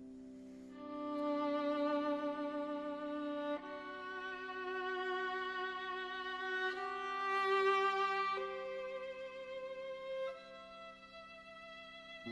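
Violin and piano: the violin enters about a second in, over a fading piano chord, and plays a slow, lyrical melody of long held notes with vibrato, changing note every two to three seconds over quiet piano accompaniment. It softens near the end.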